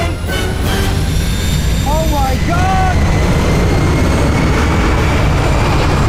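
Steady, loud roar of an Airbus A400M transport plane's turboprop engines and rushing air in flight, with a brief voice about two seconds in.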